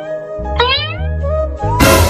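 Cartoon soundtrack: background music with a low bed, and a short squeaky sound effect that slides upward in pitch about half a second in. Near the end comes a loud whooshing burst.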